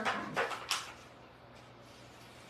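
Brown craft paper rustling and scraping in three short strokes in the first second as it is rolled up by hand.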